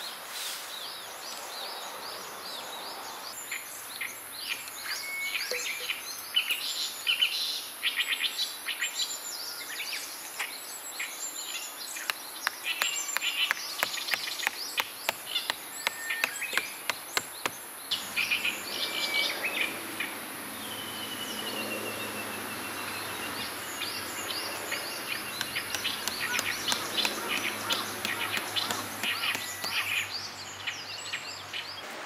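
Outdoor daytime ambience of many birds chirping and singing in quick, short calls over a steady high insect drone. About twenty seconds in, one bird gives a long, slightly falling whistle.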